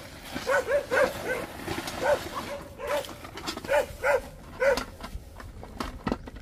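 Dogs barking: about eight short barks in a loose series that stops about five seconds in.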